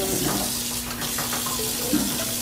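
Kitchen tap running, its stream of water pouring onto salted napa cabbage in a stainless steel bowl in the sink as the salt is rinsed off.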